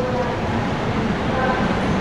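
Passenger train coaches rolling slowly out of the station, heard from an open coach doorway: a steady rumble of wheels and running gear.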